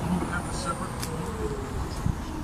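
City street traffic: a steady low rumble from road vehicles, with faint distant voices and a single sharp click about a second in.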